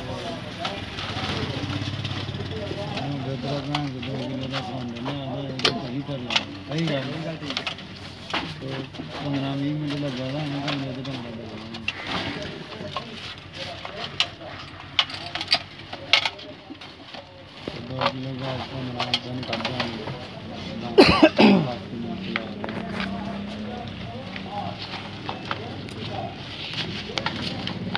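Background voices talking, with scattered clicks and taps of metal parts and a screwdriver being handled during reassembly of a quartz heater's reflector and heating rods. About 21 seconds in there is a loud short sound falling in pitch.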